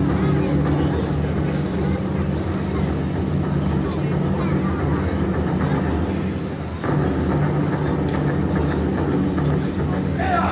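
Spectators chattering over a steady low hum.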